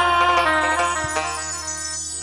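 Instrumental accompaniment of a live Bengali folk song between sung lines: held electronic keyboard notes over a steady low drone, with a short soft knock about a second in.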